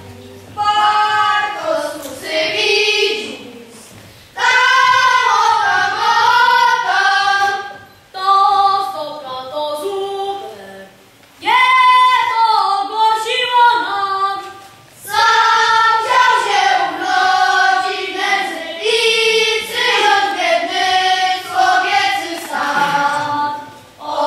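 A group of children singing together in sung phrases a few seconds long, each broken off by a brief pause for breath.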